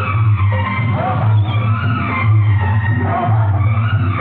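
Music playing, with a strong, steady bass.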